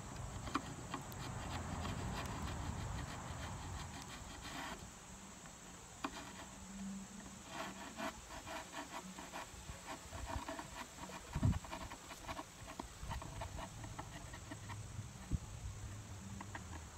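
A metal chisel blade scraping and clicking along the wooden edge of a veneered tabletop in a rapid series of small clicks, with one dull thump about two-thirds of the way through. Steady insect chirring runs underneath.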